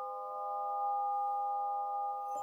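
Svaram nine-bar swinging (flow) chime's metal bars ringing on, several steady tones sounding together and held as a sustained chord.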